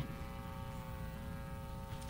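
Faint steady electrical hum, several held tones at once, over quiet room tone.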